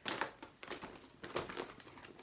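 Irregular rustling and soft clicks of hands rummaging through packaged toys and items inside a child's backpack.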